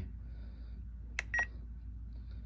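A sharp click and then a short electronic beep about a second in, from a Spektrum NX10 radio transmitter as its scroll-wheel press confirms a menu selection.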